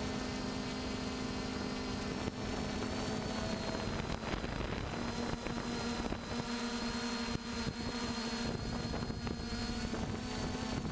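Quadcopter drone's electric motors and propellers whirring steadily, recorded by its own onboard camera. The pitch shifts slightly about halfway through as the motors change speed.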